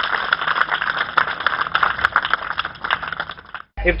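A small crowd applauding by hand, a dense patter of claps that cuts off abruptly near the end.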